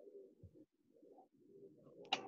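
Near silence on a video-call line, with a few faint, short, low-pitched sounds.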